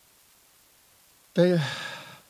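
Quiet pause into the microphone, then about a second and a half in a man sighs once, a breathy voiced sound falling in pitch and trailing off.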